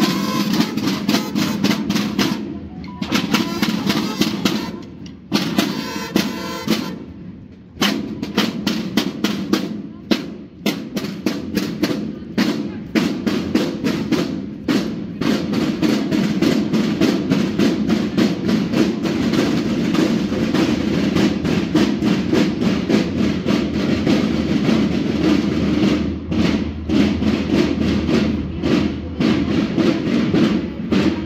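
Marching-band snare drums playing a rapid, steady cadence, the strokes thinning briefly twice near the start before the full beat picks up again.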